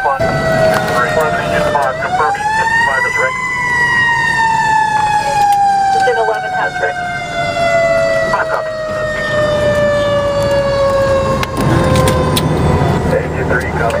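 Fire truck siren wailing over the rig's engine and road noise. It winds up quickly about two seconds in, falls slowly in pitch for around nine seconds, and starts rising again near the end.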